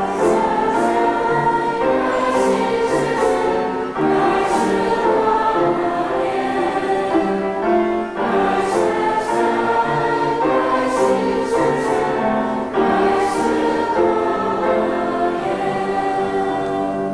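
Choir singing a church piece, in phrases of about four seconds with short breaths between them.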